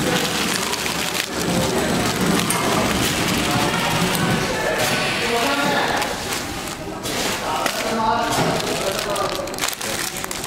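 Tray flow-wrap packing machine running with a steady, noisy whir, with people talking in the background.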